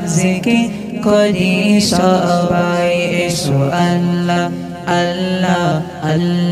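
Male voice singing a Bengali Islamic devotional zikir song in a chanting style, the melody bending on drawn-out syllables over a steady low drone.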